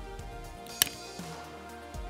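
Soft background music playing steadily, with a single sharp click a little under a second in.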